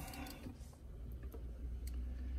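Faint, irregular ticking over a low steady hum inside the truck cab while the scan tool communicates with the truck's modules during an immobilizer relearn.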